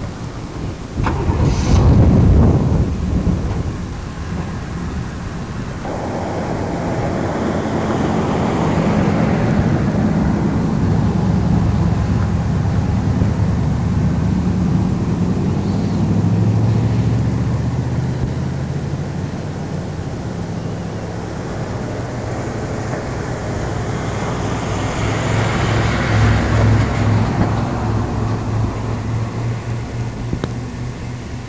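A motor vehicle's engine running steadily in a low hum that shifts in pitch and swells again about 25 seconds in. Wind buffets the microphone in the first few seconds.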